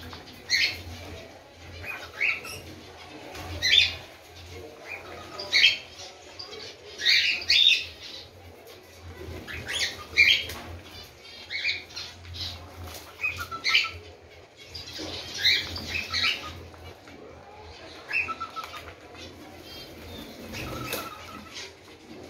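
A small flock of pet cockatiels and finches at a shared food plate, giving short, sharp chirps every second or two over a soft, steady rustle of pecking at seed.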